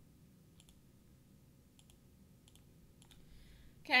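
Faint clicks from a computer mouse, each a quick press-and-release pair, four or five times over about three seconds.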